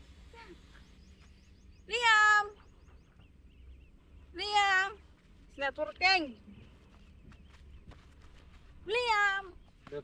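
A toddler's high-pitched squeals: four loud half-second calls that rise and fall in pitch, the third broken into a quick run of short squeaks, over a low steady outdoor rumble.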